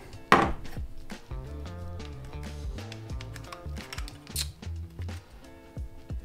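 Background music with a steady bass line, over small plastic-and-metal clicks and knocks as a bow sight's light kit and housing are handled. One sharp click, the loudest sound, comes about a third of a second in, and a lighter one comes near the end.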